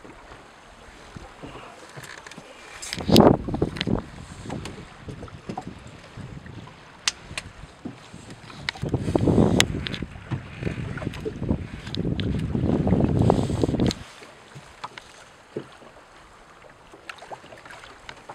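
Wind and sea around a small open boat: water moving along the hull and wind buffeting the microphone in three louder gusts, a short one a few seconds in, then two longer ones in the second half, the last stopping suddenly, with scattered faint clicks.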